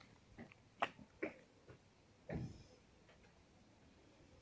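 Hungarian vizsla making a few short, quiet sounds while its foreleg is held and worked: two brief ones about a second in, then a longer, lower one just past halfway.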